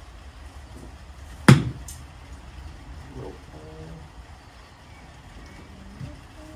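A golf wedge striking a ball off a driving-range mat: one sharp, crisp impact about a second and a half in.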